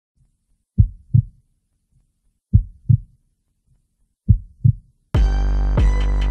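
Heartbeat sound effect: three slow double thumps, each pair about one and three-quarter seconds after the last, then loud music starts abruptly about five seconds in.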